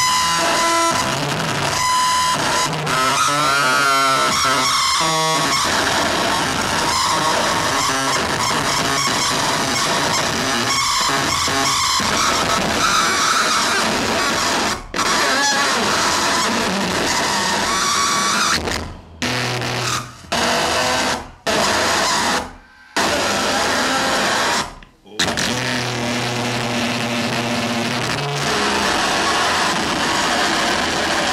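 Live noise music: a dense, loud wall of electronic noise with wavering pitched tones and a low drone. It cuts out abruptly once about halfway through, then several more times in quick succession over the following ten seconds before resuming.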